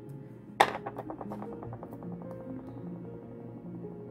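Soft background music, with a sharp knock on the wooden tabletop about half a second in. A quick rattle follows and dies away over about a second and a half, as a light object is set down.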